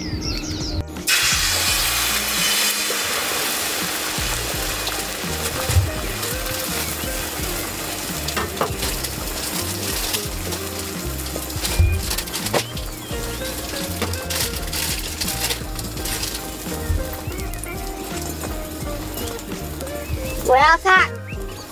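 Beaten egg sizzling on a hot griddle pan, the sizzle starting suddenly about a second in and running on steadily as the thin omelette fries. Background music plays underneath.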